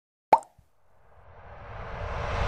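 A single sharp pop out of silence, with a faint second tick just after it, then a swell of noise that rises steadily in loudness.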